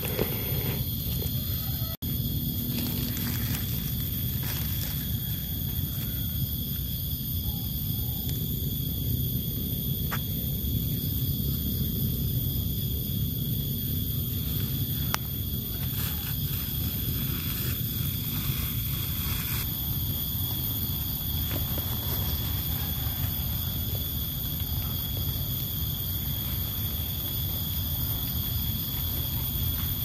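Forest ambience: a steady high-pitched insect drone over a low rumbling background, with a few faint crackles of steps in dry bamboo leaf litter.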